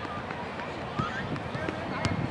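Brief distant shouts and calls from soccer players across an open field, with an uneven low rumble underneath.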